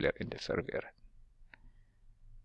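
Brief mumbled speech, then a faint single click of a computer mouse about a second and a half in.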